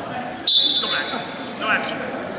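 Referee's whistle blown once, a steady high-pitched tone held for about a second, stopping the wrestling action.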